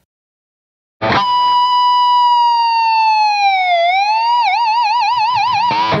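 Electric guitar's fourth-fret natural harmonic on the third string, picked about a second in: a high, piercing tone held, slowly dipped with the whammy bar and pulled back up, then wobbled fast with the bar into a police-siren sound.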